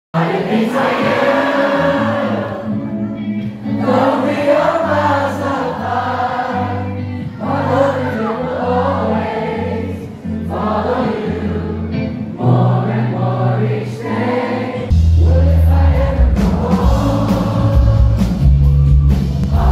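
Live pop band music with a singer over electric guitar. About three-quarters of the way through, a heavier low end of bass and drums comes in.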